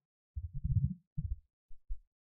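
Computer keyboard being typed on, heard as a few short, dull, low thumps.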